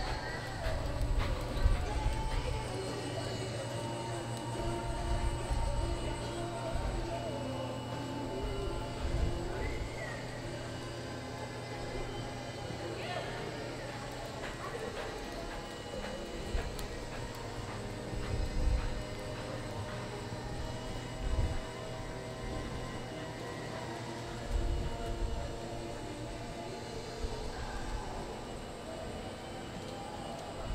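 Indoor arena ambience: a steady low hum with faint music and distant voices, and now and then low thuds from a horse's hooves on the arena dirt.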